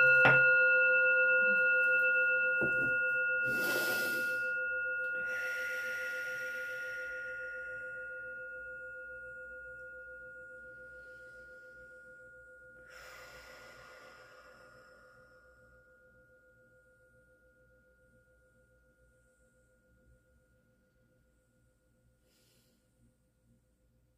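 Brass singing bowl ringing after a single strike: a low steady tone with higher overtones, fading slowly to almost nothing over about twenty seconds. A few short soft hissing rushes sound over it.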